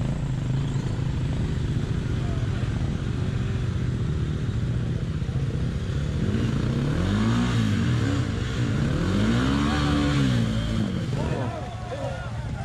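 Dirt bike engines running in a shallow creek crossing, with one bike revved up and back down twice in the water, about seven and ten seconds in, while water splashes around it.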